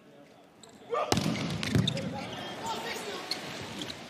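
A volleyball struck hard about a second in, the serve, then more ball contacts during the rally over a loud arena crowd shouting and cheering.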